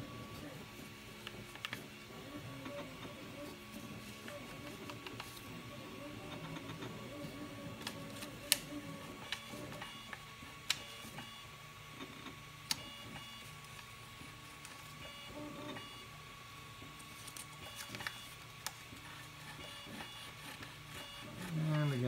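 Ultimaker 3 3D printer running idle with a steady low hum and a faint steady whine, and a few sharp clicks in the middle stretch while the build plate is being hand-adjusted for leveling.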